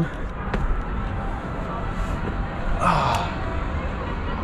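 Outdoor background noise with a steady low rumble, a single sharp click about half a second in, and a brief breathy exhale-like vocal sound about three seconds in.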